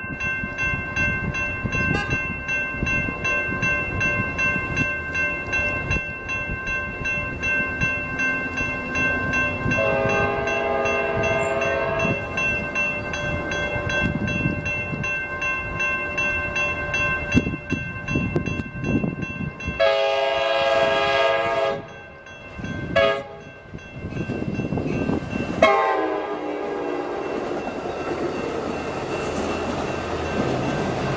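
Amtrak Pacific Surfliner train horn sounding the grade-crossing signal, long, long, short, long, over the steady ringing of crossing bells. As the last blast fades, the train passes close by with the rumble of wheels on the rails.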